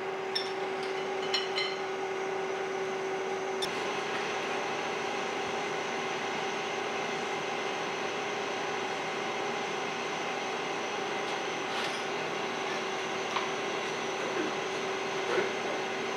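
A steady mechanical hum with a held tone that fades a few seconds in, and a few light metallic clicks as a steel rebar is clamped into the grips of a universal testing machine.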